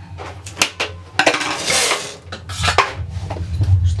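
Knitting-machine carriage pushed across the metal needle bed, knitting a row: a clattering, rattling slide of the needles, loudest about a second in, with scattered clicks.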